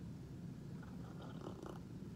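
Faint sips and swallows of soda as a man drinks from a small glass, over a steady low hum.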